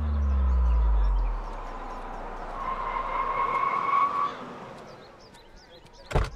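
A deep falling tone dies away in the first second and a half. Then a Toyota Innova rolls up and its brakes give a steady high squeal for under two seconds as it comes to a stop.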